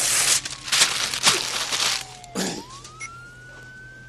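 Handheld two-way radio hissing and crackling with loud static for about two seconds. Then comes a tone that glides upward and holds steady to the end.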